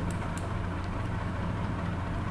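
A steady low hum of background noise, with a couple of faint clicks in the first half-second.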